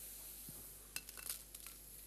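Dried red Guntur chilies being dropped by hand into a dry non-stick pan for dry roasting: a few faint light taps and rustles about a second in.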